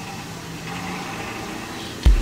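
A steady low hum, like a distant engine or motor running, with no sharp knocks.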